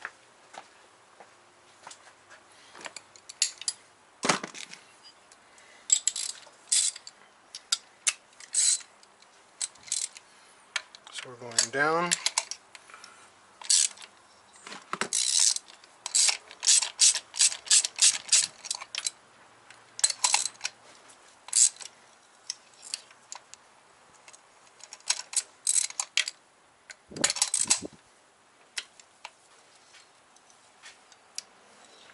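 Hand ratchet clicking in quick runs as a spark plug socket on an extension loosens the spark plugs in a VW 1.8T four-cylinder head, between scattered metal clicks and taps of the tools. There is a brief rising squeak about eleven seconds in and a heavier knock near the end.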